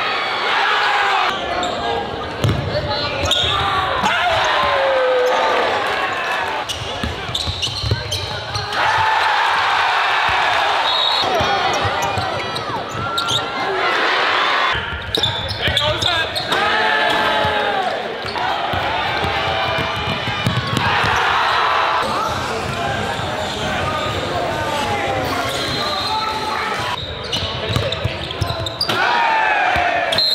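Basketball game sound in a gym: the ball bouncing on hardwood, sneakers squeaking, and players' and spectators' voices echoing in the hall.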